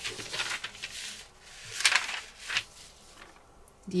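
Paper pattern sheets rustling and sliding on a tabletop as they are shifted by hand, in a few short bursts, the loudest about two seconds in.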